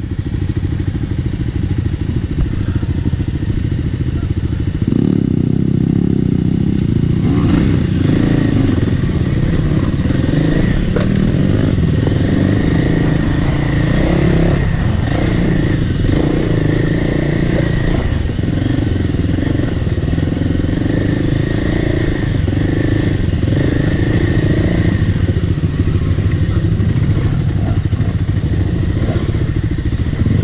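Kawasaki KLX300R dirt bike's single-cylinder four-stroke engine running under load on a rocky trail. It gets louder about five seconds in as the throttle opens, with scattered knocks and clatter over the rough ground.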